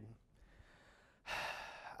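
A man's audible sigh, a noisy breath lasting under a second that starts a little past a second in after a brief faint pause. It sounds as exasperation, since he goes on to say he is very frustrated.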